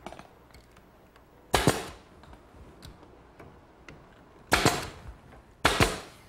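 Pneumatic nailer firing three times into redwood slats and shelving: a sharp crack about a second and a half in, another at about four and a half seconds and a third near the end, each with a short tail.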